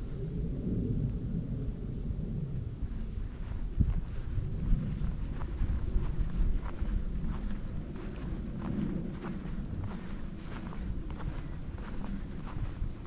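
Footsteps of someone walking at an easy pace, sounding as short steps about twice a second, clearer in the second half, over a steady low rumble.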